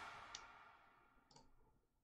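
Near silence with two faint computer mouse clicks about a second apart.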